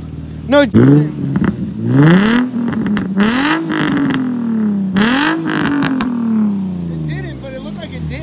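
Infiniti G35's 3.5-litre V6 being revved through a custom 2-inch single-exit catback exhaust, heard from just behind the tailpipe: four revs that rise and fall, the last one sinking slowly back toward idle near the end.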